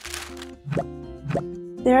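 Light background music with steady held notes and two soft plopping hits about half a second apart, opened by a brief whoosh as the scene changes; a woman's narrating voice comes in at the very end.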